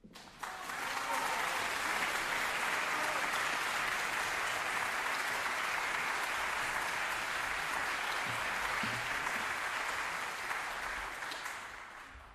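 Audience applauding in a theatre. It starts abruptly, holds steady, and fades away near the end.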